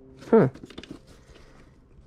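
Faint clicks and rustles of small plastic toy figures knocking together as a gloved hand digs into a bin of them, in a quick cluster just after the start that then dies away.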